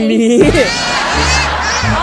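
A crowd of many voices laughing together, a laughter sound effect edited in for comedy. It comes in about half a second in, after a brief spoken word.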